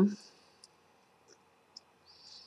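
A woman's drawn-out "um" trailing off, then near quiet with three faint, brief clicks.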